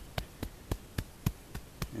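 A bare hand patting loose garden soil down over freshly planted seeds: a quick, even run of light taps, about three to four a second.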